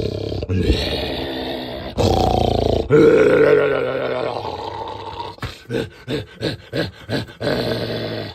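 A man making long, wordless vocal sounds, then laughing in short bursts near the end.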